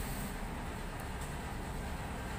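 Steady low background noise with no distinct event, and a couple of faint light ticks about a second in.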